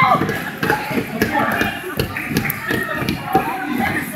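A basketball bouncing and children's feet tapping and shuffling on a gym court, irregular taps and thuds throughout, with spectators' voices in the background.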